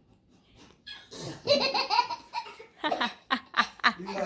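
A young child laughing out loud. It starts about a second in with a long, high laugh and ends in a quick run of short ha-ha bursts.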